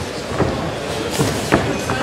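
Boxing arena sound: a steady crowd murmur with a few sharp thuds from the ring, about four in two seconds.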